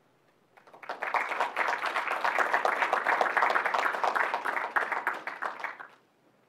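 A small audience applauding for about five seconds, starting about half a second in and dying away just before the end.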